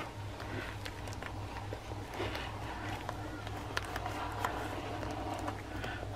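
Quiet handling sounds of small stationery items being slipped into the pockets of a canvas pouch: faint rustles and light taps, over a low steady hum.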